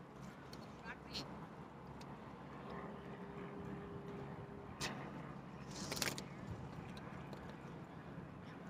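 A few faint clicks and taps from a plastic crab gauge and a wire-mesh castable crab trap being handled while a Dungeness crab is measured for legal size. The loudest cluster of taps comes about six seconds in.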